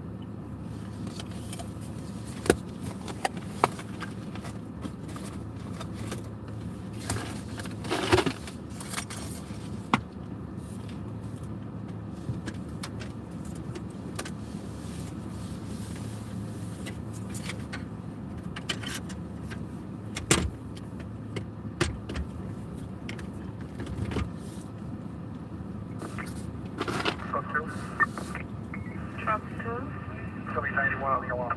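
Steady low hum of a car's cabin with the engine running, broken by scattered clicks and crinkly rustling of a snack bag as pretzels are eaten, the loudest crinkle about eight seconds in. Near the end a thin, radio-like voice comes in from a police scanner.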